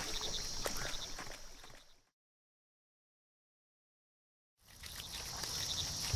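Outdoor ambience of crickets chirping steadily. It fades out to complete silence about two seconds in, stays silent for about two and a half seconds, then fades back in near the end.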